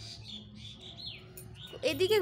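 Small birds chirping in short high calls, one sliding down in pitch about a second in, over a faint low steady hum. A voice starts near the end.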